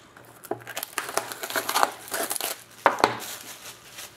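Plastic shrink-wrap being peeled off a sealed trading-card box and crumpled by hand, an irregular crinkling and crackling, with a sharp tap a little before three seconds in.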